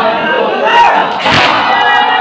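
A crowd of male mourners shouting a chant together during matam, with one loud chest-beat slap a little over a second in.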